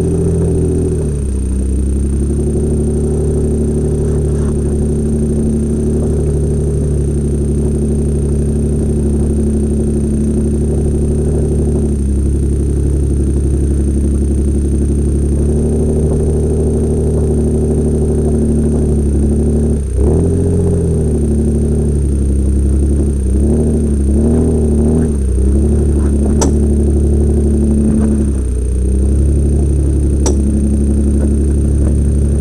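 A 4x4's engine heard from inside the cabin, running steadily at low speed over a rutted muddy track. Its pitch dips and rises briefly about two-thirds of the way through, with a faint steady high electronic whine throughout.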